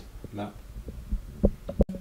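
Low thumps and handling noise from a handheld camera being moved around, with a couple of short, faint voice fragments. The sound breaks off abruptly near the end at an edit cut.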